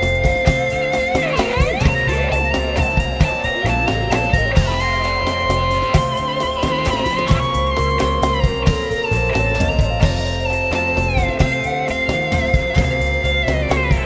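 Live rock band playing an instrumental passage: electric guitar over drums and bass, with long held lead notes that slide from one pitch to the next.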